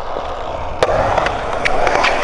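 Skateboard wheels rolling on a concrete bowl, with a sharp clack of the board on the coping a little under a second in, then a few lighter knocks.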